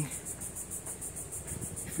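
Insects trilling, a high, fast, even pulsing of about ten beats a second.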